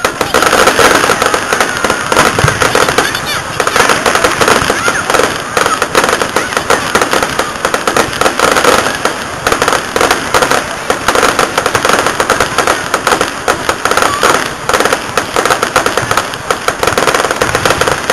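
Fireworks going off in a rapid, unbroken barrage: a dense, continuous crackle of many shells and stars bursting in quick succession.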